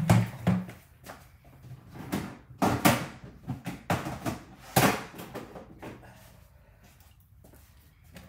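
Scattered knocks and clatters of someone rummaging through supplies in a small room, several separate knocks in the first five seconds.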